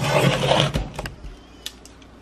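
Hands handling product packaging: a burst of rustling through about the first second, then a few sharp light clicks.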